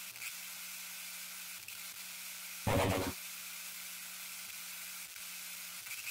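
Steady faint hiss with a low hum under it, broken once about three seconds in by a short, louder burst of noise lasting about half a second: an end-card transition sound effect.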